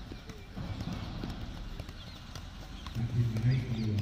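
Two footballs being juggled, kicked up off feet and thighs: a run of repeated short thuds at two overlapping rhythms.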